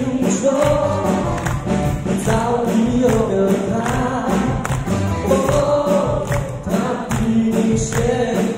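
A male vocalist singing live into a microphone, holding long notes with vibrato, over a live band of drums, electric guitars and keyboard with a steady drum beat.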